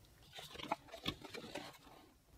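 Handling noise from putting down a USB card reader and its cable and picking up a stiff paper leaflet: an irregular run of light rustles and small taps that begins about a third of a second in, with two sharper knocks around the middle.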